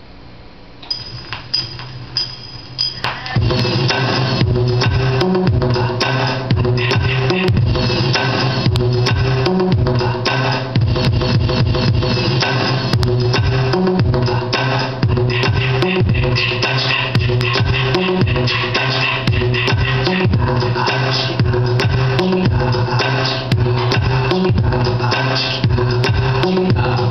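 A 90s hip-hop track played off a DJ mixer: a few brief quiet sounds, then the beat comes in loud about three seconds in, with a heavy bass line and a steady drum beat.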